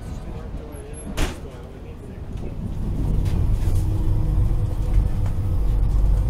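Cabin rumble of a Ganz-MÁVAG-built HŽ 6111 electric multiple unit pulling away, a deep rumble with a steady hum that swells from about two and a half seconds in. Before it come voices and a single sharp knock about a second in.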